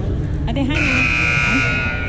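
Basketball gym scoreboard buzzer sounding once, a steady high tone of about a second and a half starting a little past the middle, over spectators' voices in the hall.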